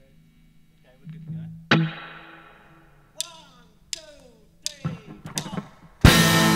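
Guitar picked in sparse single strokes before the band starts: one loud struck chord about two seconds in rings out and fades, then several sharp notes that slide down in pitch.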